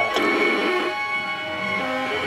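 Music: bowed strings (violin, viola and cello) holding sustained tones, with a thicker swell in the lower-middle range during the first second.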